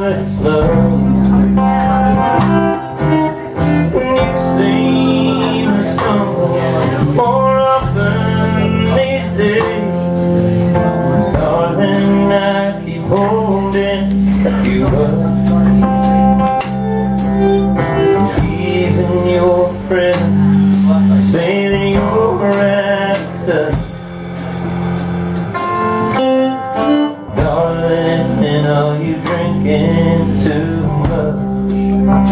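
A live country band playing: an electric guitar over a strummed acoustic guitar, electric bass and drums with cymbals, with no words sung, most likely an instrumental break.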